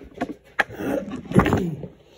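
Handling noise close to a phone's microphone: three sharp knocks with scraping and rubbing in between, as the phone is set down against pool balls and a polish tub on a towel.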